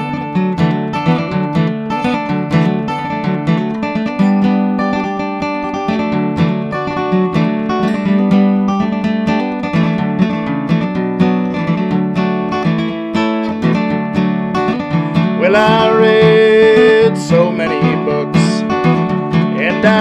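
Solo acoustic guitar playing an instrumental passage of a folk song, picked notes and chords ringing steadily. About three-quarters of the way through a man's singing voice comes in over the guitar.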